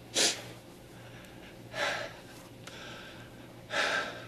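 A person's sobbing, gasping breaths: three sharp, noisy breaths about two seconds apart.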